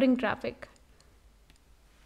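A woman's voice trails off in the first half-second, then a few faint, sharp computer-mouse clicks over quiet room tone.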